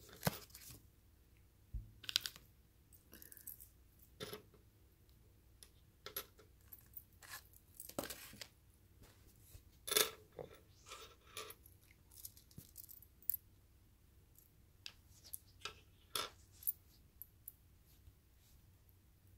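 Small metal rhinestone charms clicking and clinking as they are handled and set down: scattered light clicks at uneven intervals, the loudest about ten seconds in.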